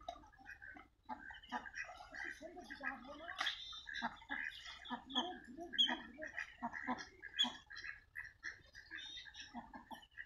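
Domestic ducks on a pond calling, with many short calls following one another quickly, mixed with the chirping of small birds.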